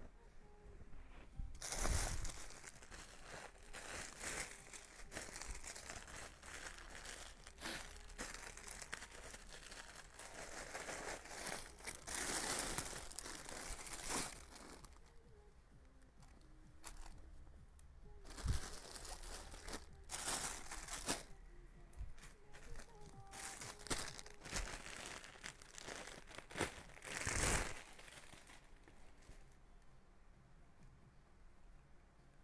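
Clothing and plastic packaging rustling and crinkling as a garment is handled, unfolded and pulled on. The sound comes in irregular bursts, with a quieter pause about halfway through.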